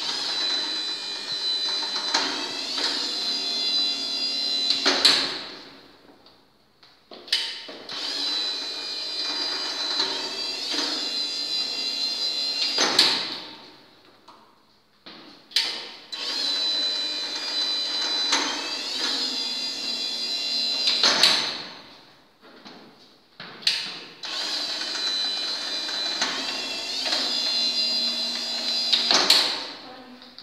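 Yack N970 wheeled stair climber's electric motor and gearbox whining through its stepping cycle four times, each run about five seconds long, starting with a click and ending in a louder clack, with a short pause between. Each run lowers the climber and its rider down one stair.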